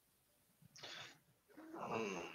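Near silence on a video-call line, broken by a brief faint noise about a second in. Near the end a man's voice starts a drawn-out, hesitant sound before speaking.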